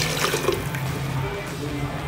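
A stream of water poured from a glass into a pot of fried mutton and masala, splashing into the curry, with background music.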